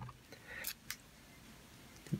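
Faint handling noise from a hand-cranked die-cutting machine as it is worked and let go, with one sharp tick just before a second in.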